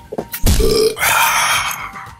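Cartoon sound effects for a figure swigging from a jug: a short, low burp about half a second in, followed by about a second of hissing rush.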